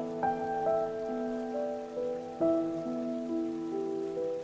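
Solo piano playing a melody, one note about twice a second, layered over a steady hiss of running water.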